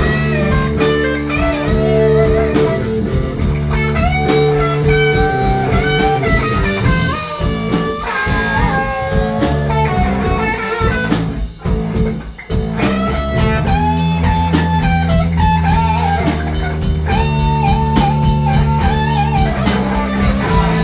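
Blues-rock band playing: an electric guitar plays bending lead lines over drums. The music drops out briefly about twelve seconds in.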